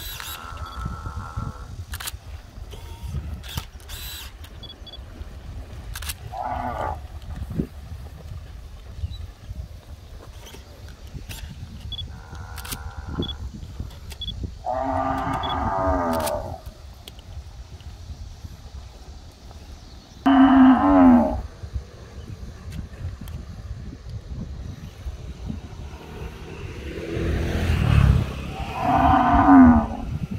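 Cattle mooing, about six separate drawn-out moos, the loudest about two-thirds of the way through and another just before the end. A steady low rumble of wind on the microphone runs underneath and swells near the end.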